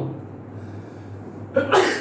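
A man sneezes once, sharply, near the end, over a steady low hum.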